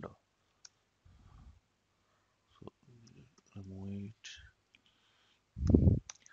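Sparse clicks of computer keys and buttons as code is typed and an autocomplete suggestion is accepted. Near the end comes a louder low thud.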